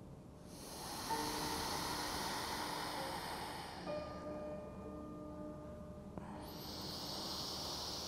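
Two slow, deep breaths heard as a soft rushing hiss: the first lasts about three seconds, and the second begins about six seconds in. Soft ambient music with sustained notes plays under them.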